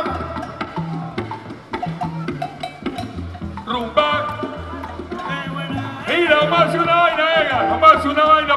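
Live salsa band playing: a repeating bass line under sharp wood-block-like percussion strikes. About six seconds in, voices come in over the band and it gets louder.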